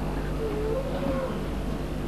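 Quiet murmur of a congregation reciting a Quran sura under their breath. One faint voice holds a drawn-out, slightly rising note about half a second in, over a steady low hum.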